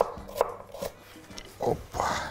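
A few sharp, separate knocks of a kitchen knife on a wooden cutting board as carrot is chopped, followed by a short exclamation near the end.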